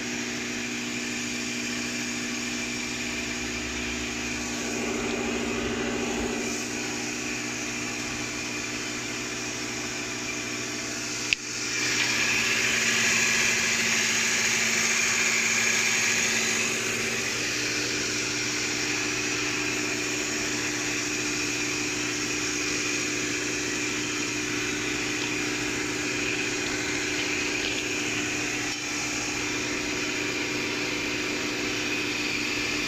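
Paper napkin making machine running, with a steady hum of several low tones under a hiss. A sharp click comes about a third of the way in, and the hiss is louder for several seconds after it.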